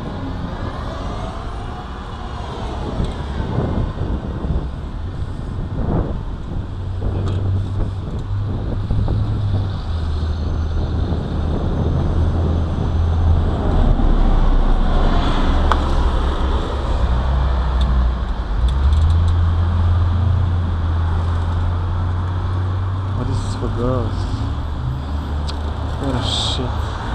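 Street traffic: cars passing on the road beside the sidewalk, over a steady low rumble that is loudest in the middle.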